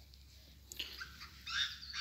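Chinese francolin calling: a harsh run of notes that starts under a second in.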